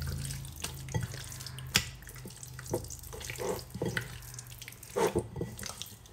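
Hands squishing and kneading raw chicken breasts coated in an oily paprika-and-lime marinade in a ceramic bowl: irregular wet squelches and slaps.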